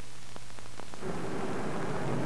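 Hiss, low hum and scattered crackles of an old film soundtrack. About a second in, a louder rumbling noise comes in and keeps going.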